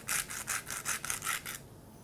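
Hand-twisted sea salt grinder grinding in a rapid, even run of short strokes, about six a second, stopping about one and a half seconds in.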